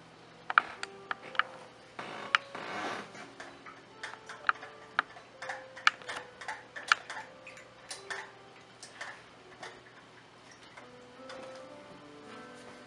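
A metal palette knife clicking and tapping irregularly against the paint surface, about two dozen sharp ticks, with one short scrape about two seconds in.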